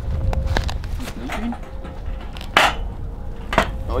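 Wind rumbling on the microphone, with light metallic clicks and rattles from a wire cage live trap. About two and a half seconds in comes one short, loud noisy burst.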